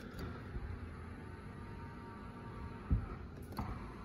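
Power-folding side mirror motor on a 2017 GMC Sierra running faintly as the mirror folds in, heard from inside the cab, with a thump about three seconds in and a click shortly after.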